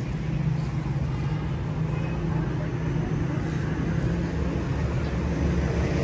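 Steady road traffic rumble from cars on a city street, a continuous low hum without distinct events.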